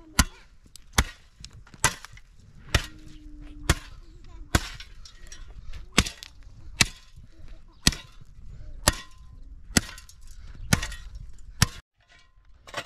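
Steel shovel blade driven into dry, stony ground, a sharp hit about once a second, about a dozen strokes, with gritty scraping of soil and stones between them.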